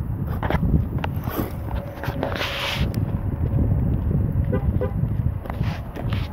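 Electric-converted Ofna LX 1/8-scale RC buggy running on gravel, its brushless motor and tyres heard over heavy wind rumble on the microphone. Bursts of gravel and tyre noise come and go, with the largest about two seconds in.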